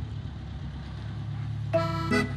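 Tractor engine running steadily at low revs, a continuous low rumble. Near the end a chord of accordion background music comes back in over it.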